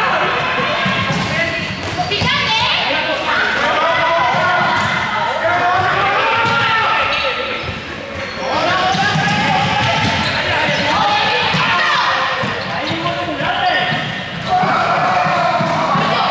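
Balls bouncing on a sports-hall floor amid many players shouting and calling out at once, all echoing in the large hall.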